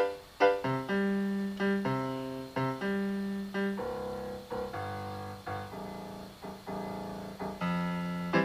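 Instrumental keyboard music with a piano-like tone: a couple of short struck notes, then sustained chords, each held and fading before the next.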